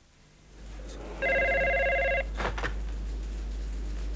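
Desk telephone ringing once, a single trilling ring about a second long that starts about a second in, over a low steady hum.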